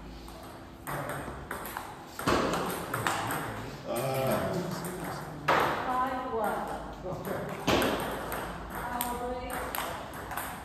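Table tennis rally: the plastic ball ticking sharply off bats and table in a run of quick hits, with voices calling out between points.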